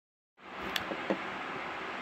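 Steady hiss of room tone starting about half a second in, with a couple of faint clicks.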